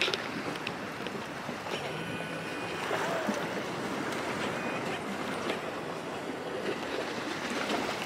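Steady wash of calm, shallow sea water lapping around the shore, with light wind on the microphone.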